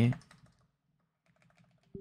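Typing on a computer keyboard: a few faint keystrokes in two short runs with a brief pause between them.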